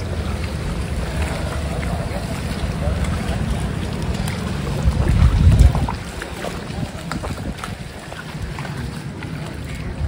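Wind buffeting a phone microphone, a low rumble that swells about five seconds in, over faint splashing of floodwater.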